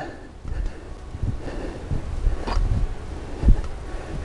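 Wheel hoe pushed along through soft garden soil, cutting a furrow: an uneven low rumble of the wheel and digging shank working through the dirt, with footsteps and a few soft knocks and scuffs.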